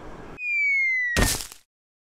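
Cartoon sound effect for an animated logo: a slow falling whistle tone that ends in a single sharp whack.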